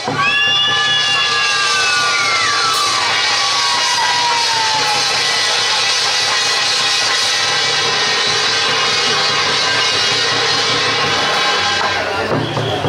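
Loud, steady temple-procession music with drums and cymbals, played for a costumed troupe's performance. At the start a ringing tone slides down in pitch over the first few seconds.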